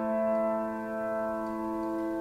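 Piano chord held and ringing on, slowly fading, with no new notes struck.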